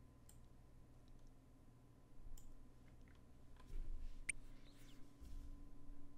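A handful of faint, scattered clicks of a computer mouse at a desk, over a faint steady hum.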